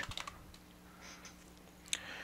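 Faint keystrokes on a computer keyboard as a word is typed: a few quick taps in the first half second and one more click just before the end.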